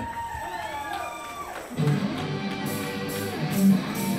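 Country rock band starting to play live: after a quieter opening, guitars and bass come in about two seconds in, with drum cymbal strokes keeping a steady beat.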